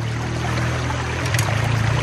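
Stream water rushing through and around a metal sluice box, with a steady low hum underneath and a light click a little past halfway.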